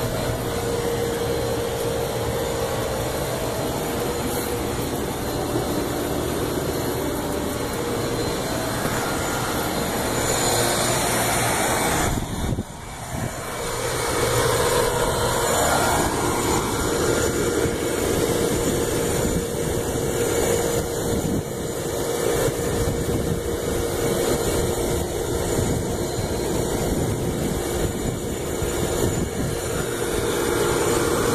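Large rooftop air-conditioning unit running: a steady, loud rush of fan and machinery noise with a faint hum underneath, dipping briefly about twelve seconds in.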